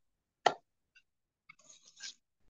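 A single short, sharp click about half a second in, followed near the end by faint breathy noise.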